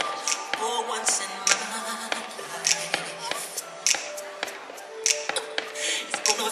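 Fireworks going off in sharp, irregular pops and cracks, about two or three a second, over music playing for the show.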